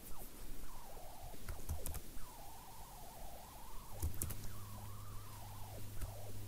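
A few faint computer mouse clicks over room tone, with a faint wavering whine-like tone in the background and a low hum during the second half.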